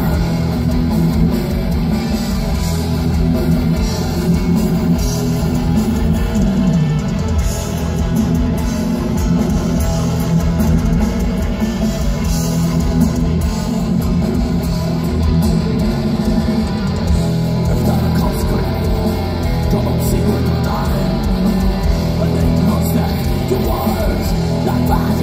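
Live black metal band playing loudly through a festival PA: distorted electric guitars, bass guitar and drums in a dense, continuous wall of sound, heard from within the audience.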